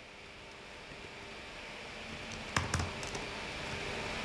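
Computer keyboard keys being typed: a short, quick run of clicks a little past halfway through, over a faint steady hiss.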